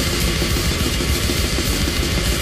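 Deathgrind recording: loud, dense, distorted band music with fast drums pounding without a break.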